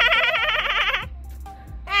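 A person doing a forced, very high-pitched laugh that warbles rapidly up and down for about a second, a squeal like a dolphin.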